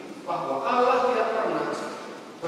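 A man's voice preaching over a microphone: one long spoken phrase after a brief pause at the start.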